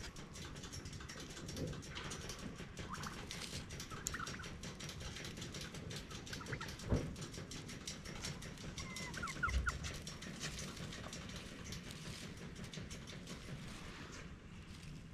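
Domestic tom turkeys in strut making a few faint, short calls at intervals over low background noise, with a soft thump about seven seconds in.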